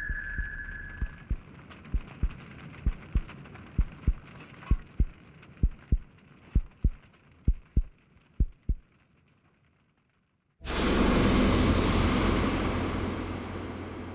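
Slow, low paired thumps like a heartbeat, about one pair a second, fading away, then a second of near silence. Then a sudden loud hiss as the red-hot, clay-coated sword blade is plunged into the water trough to quench it, slowly dying down.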